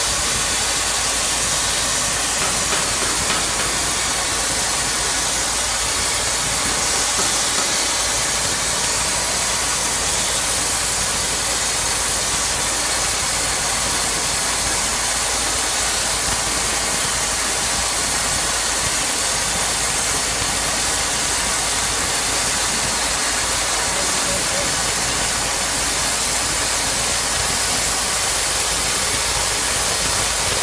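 Oxy-acetylene cutting torch hissing steadily as its flame cuts through steel.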